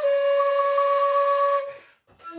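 A metal whistle holding one long, steady note at the end of a phrase, fading out near the end.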